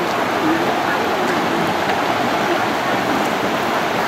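Steady rushing of flowing stream water, an even hiss with no breaks.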